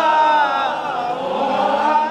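A man's voice chanting a slow, drawn-out melodic lament over a loudspeaker. The notes are held long and waver gently, dipping about a second in before rising again, in the sung style of a Bangla waz sermon.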